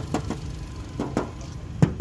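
Honda Brio's 1.2-litre i-VTEC engine idling with a steady low hum, with a few short knocks over it, the loudest just before the end.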